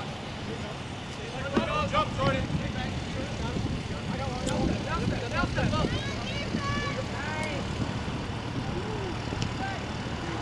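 Scattered shouts from players and spectators during play at an outdoor soccer game, a few calls around two seconds in and more in the middle, over a steady low background rumble.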